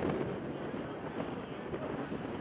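Outdoor ambience dominated by steady wind rumbling on the microphone, with faint distant voices mixed in.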